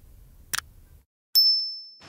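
A short click about half a second in, then a single bright ding that rings out and fades: a notification-bell sound effect.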